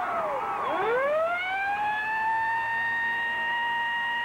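A siren wailing: its pitch sinks low about half a second in, then climbs back up and holds one steady high tone.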